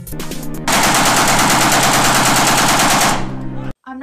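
Rapid gunfire sound effects mixed over a background music track: quick evenly spaced shots at first, then about a second in a loud, dense continuous burst lasting about two and a half seconds that fades and cuts off shortly before the end.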